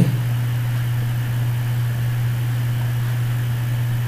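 A steady low hum with an even hiss over it, unchanging throughout: the background noise of the recording, with no speech.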